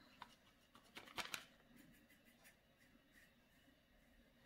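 Near silence: quiet room tone, with a few faint, brief scratchy ticks about a second in from a paintbrush working acrylic paint onto a canvas board.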